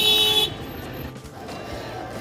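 A single short car horn toot lasting about half a second, followed by quieter outdoor background noise.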